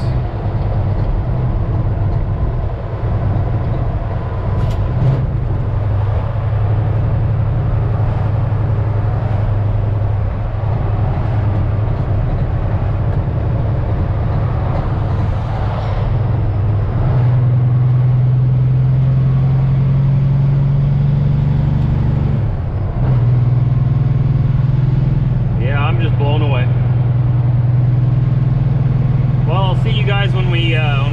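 Semi-truck diesel engine heard from inside the cab while driving, a steady low drone. About halfway through it rises in pitch and loudness, dips briefly a few seconds later, then picks up again.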